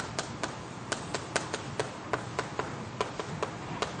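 Chalk writing on a blackboard: an irregular run of sharp chalk taps, several a second, as symbols are written out.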